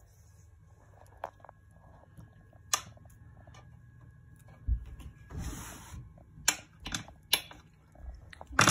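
A fork crimping pastry edges on a metal baking tray: half a dozen scattered sharp clicks as the tines knock against the tray, with a brief scrape just past the middle.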